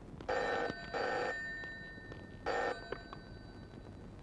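Desk telephone ringing: two rings in quick succession, then one shorter ring about two and a half seconds in, after which it stops as the call is picked up.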